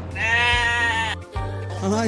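A comic bleating sound effect, one wavering 'baa' about a second long, laid over light background music.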